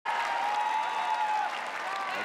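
Large audience applauding, with a long held note over the clapping that stops about a second and a half in.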